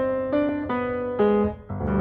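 Music: a piano-like keyboard melody of short notes stepping about three a second, dipping briefly near the end before a fuller note sounds.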